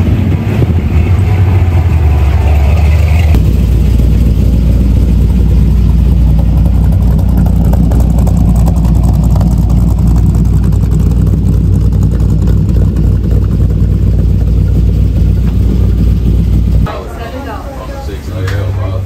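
Pickup truck engine idling with a loud, deep, steady rumble. About three seconds in it settles to a lower, even rumble, which cuts off near the end.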